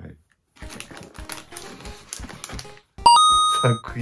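A burst of rapid clicking over background music with a light steady beat. About three seconds in it ends in a loud, bright two-note bell chime that rings out briefly, like an edited reveal sound effect.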